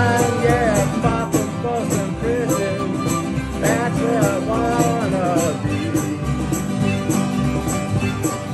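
Small country jam band playing an instrumental break: a harmonica leads with bending, wailing notes over strummed guitar, accordion, mandolin and fiddle. A light percussion beat ticks steadily about twice a second.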